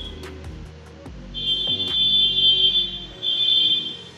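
A high-pitched steady electronic tone, sounding for about a second and a half and then again briefly near the end, over a low steady hum with a few faint clicks.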